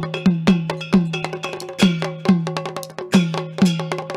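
Rajbanshi folk percussion playing on its own: sharp, clicking strikes over a low drum note, in a quick, steady rhythm.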